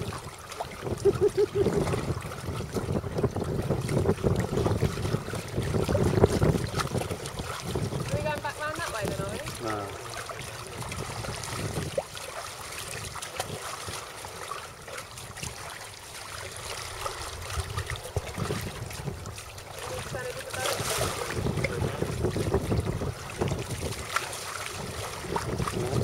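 Wind buffeting the microphone over the wash of water against a small boat's hull, gusty and loudest in the first several seconds.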